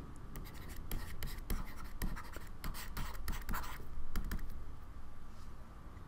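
A stylus scratching and tapping on a writing surface in short, irregular strokes as a word is handwritten.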